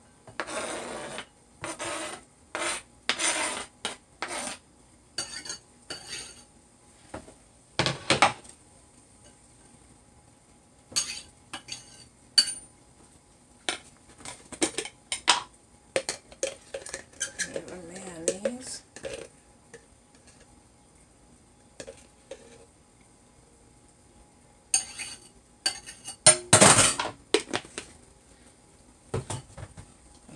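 Kitchen utensil sounds: a knife scraping and tapping chopped onion and pepper off a plastic cutting board in a quick run of strokes, then scattered clinks and knocks of a bowl, utensils and a jar, with a loud clatter a few seconds before the end.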